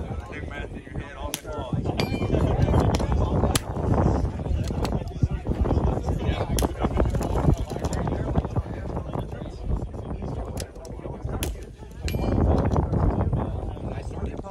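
Five sharp cracks of a .22 rimfire precision rifle, a few seconds apart, with two close together near the end. Under them runs a loud, steady low rumble.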